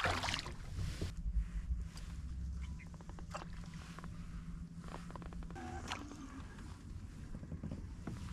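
Small clicks and knocks of gear being handled in a fishing kayak, over a low steady hum that stops about five and a half seconds in, with a brief pitched squeak near six seconds.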